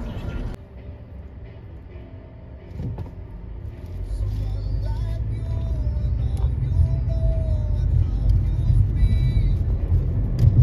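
Car driving, heard from inside the cabin: a steady low engine and road rumble that grows louder about four seconds in. Faint, thin wavering tones sit above it.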